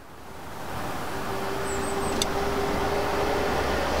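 The 1979 Jeep CJ-7's starter motor turning the engine over with the ignition held in the start position. It is a steady rumbling run that swells over the first second, with a faint whine from about a second in, and there is one short click about two seconds in.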